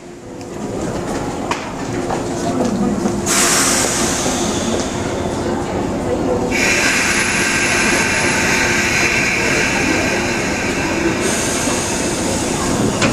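A stopped JR 185 series electric train humming steadily at the platform, with a long hiss of air starting about three seconds in, changing in tone past the middle and cutting off shortly before the end, as the two coupled train sets are being separated.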